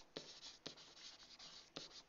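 Faint pen strokes on a SMART Board interactive whiteboard as words are handwritten: light scratching with a few soft ticks, close to silence.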